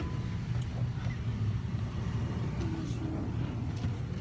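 A car's engine running, heard as a steady low rumble from inside the cabin.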